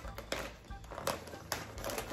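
Paper and packaging being handled: scattered rustles with a few sharp crinkles and clicks.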